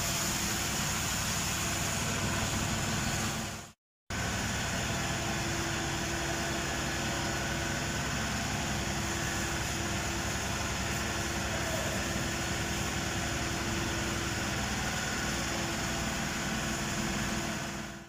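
Engine running steadily at idle, with a steady hum over a dense noise. The sound drops out completely for a moment about four seconds in, then carries on unchanged.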